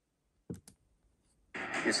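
Two quick sharp clicks, a fifth of a second apart, about half a second in, typical of a computer mouse button. Near the end the broadcast's sound cuts in abruptly with a man speaking.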